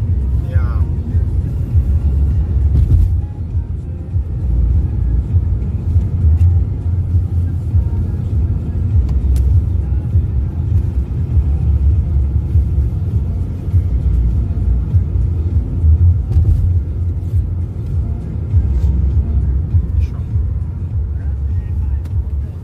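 Steady low road and engine rumble heard from inside a Toyota's cabin while driving at highway speed.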